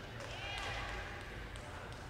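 Hoofbeats of a horse walking on dirt arena footing, a few dull thuds, with a voice faintly in the background.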